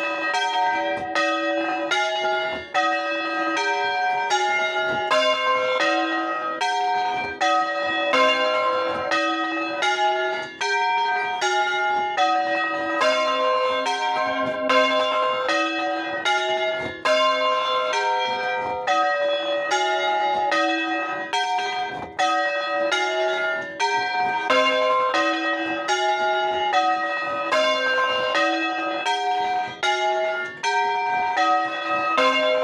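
Four small bronze church bells tuned in a minor key, rung by hand in the Bolognese style (alla bolognese) from a wooden frame. They strike one after another in a fast, even rhythm of about three strokes a second, the notes overlapping in repeating patterns.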